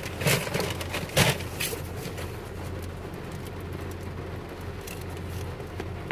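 A foil-lined sandwich wrapper crinkling, a few sharp crackles in the first two seconds, over a steady low background hum inside a car.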